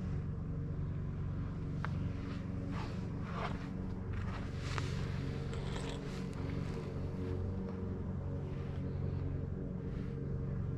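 A steady low hum throughout, with several brief rustling and scraping sounds between about two and seven seconds in.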